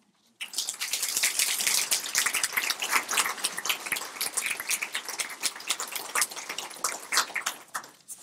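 Audience applause: many people clapping, starting about half a second in and dying away near the end.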